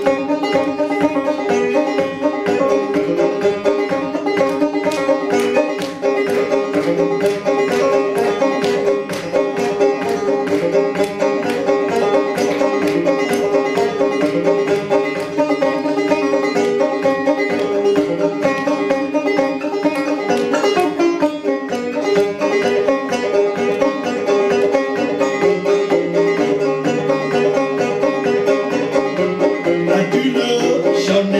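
Solo banjo played as an instrumental break, plucked strings in a steady, quick rhythm of about four to five strokes a second.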